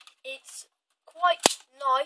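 Nerf Firestrike blaster being primed: its plastic priming handle is pulled back, giving one sharp, solid clack about one and a half seconds in.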